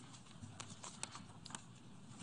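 Faint room tone with a scattering of soft, irregular clicks and taps, about half a dozen.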